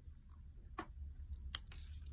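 A few faint, light clicks from a steel automatic wristwatch being handled at its crown, the clearest about a second and a half in.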